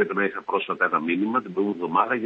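Speech only: a man talking continuously in Greek.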